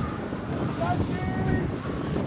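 Wind rumbling on the microphone over a distant rally car's engine, with spectators' voices faintly mixed in.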